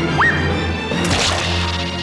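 Cartoon sound effects over background music: a quick rising whistle-like glide near the start, then a sharp swishing whoosh about a second in.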